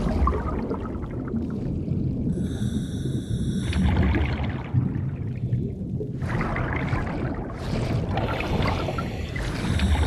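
Underwater scuba sound: a steady low rumble of water, with a breath drawn through a diver's regulator about two and a half seconds in and a long stretch of bubbling exhalation in the second half.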